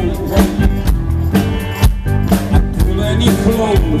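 Live rock band playing: a steady drum-kit beat with bass and guitars, and a man singing over it.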